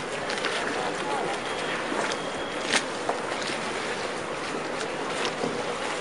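Canal water lapping and slapping against gondola hulls and mooring posts, with scattered knocks and clicks and a sharper knock about halfway through, over a busy hum of boats and voices.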